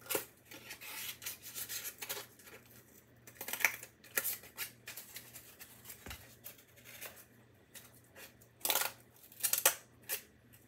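Scissors snipping through thin cardboard: irregular crisp cuts and rustling as the piece is turned, with louder cuts a little past a third of the way in and again near the end.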